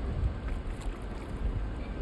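Wind rumbling on the microphone over a steady rush of running water.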